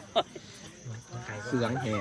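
A man's low, drawn-out voice, murmured rather than spoken out loud, in the last second, after a short click near the start.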